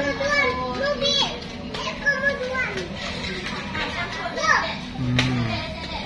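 Young children's voices, chattering and calling out in play, with an adult voice speaking briefly about five seconds in.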